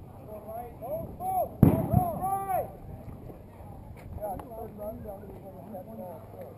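A loud bang about one and a half seconds in, followed at once by a smaller thump, with shouting voices around it.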